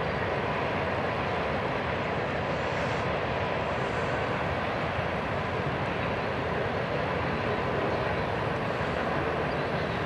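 A powered paraglider's engine and propeller run steadily in flight, giving a continuous, even drone.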